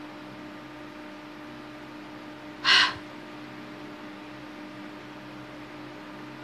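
A single short, sharp breath sound from the woman, loud and close, about halfway through, over a steady low hum.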